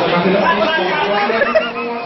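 Several people talking over one another: indistinct chatter.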